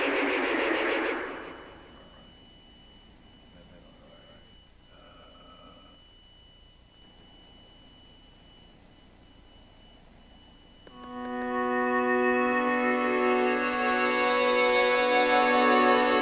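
Electronic keyboard being played: a dense musical sound in the first second or so, then a quiet pause of about nine seconds, then a sustained organ-like chord that starts suddenly about eleven seconds in and is held.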